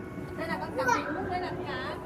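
Indistinct speech and chatter from a few people, a woman's voice among them, with no words made out; no other sound stands out.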